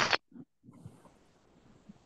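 A brief, rough vocal sound at the very start, then faint steady hiss from the call's audio line for the rest.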